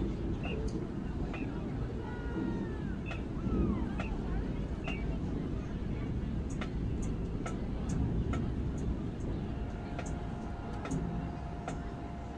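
Crowd chatter in the stands of an open-air football stadium, with scattered short clicks. About ten seconds in, faint steady held notes come in and sustain.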